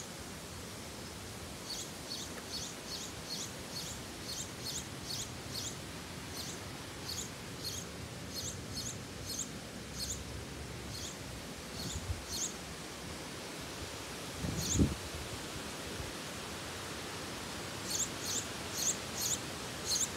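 A small songbird chirping: runs of short, high chirps, about two or three a second, with gaps between runs and a fresh run near the end. One low thump about fifteen seconds in.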